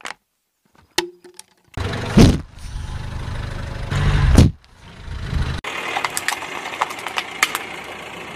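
A car tyre rolling over and crushing things on asphalt. A whoopee cushion squashed under the tyre gives a loud, low buzzing blast of air that peaks twice and stops about four and a half seconds in. Then comes a run of crackles and snaps of plastic giving way.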